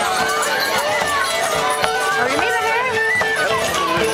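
Bagpipe playing a tune that moves in steps over one steady drone, with tambourines jingling and a crowd talking.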